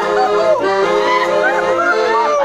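A button accordion playing a lively folk tune, with a singing voice over it that slides and arches between notes in a yodel-like way.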